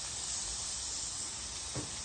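Raw ground-beef burger patties sizzling on a flat-top griddle heated to about 500 degrees: a steady hiss.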